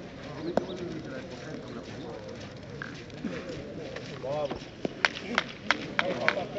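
Steel boules knocking together in a jeu provençal game: a sharp clack about half a second in, then three sharp clacks with a short metallic ring in quick succession near the end.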